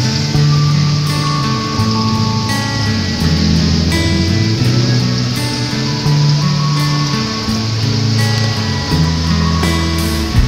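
Instrumental background music with held bass notes that change every second or so and higher melody notes over them, with a steady hiss underneath.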